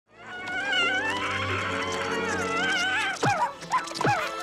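A mogwai creature's high, wavering whimpering cries, fading in over a sustained orchestral score, then two sharp falling yelps near the end.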